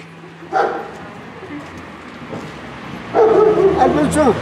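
A small dog yipping and whimpering: one short yip about half a second in, then a louder run of whines and yips in the last second.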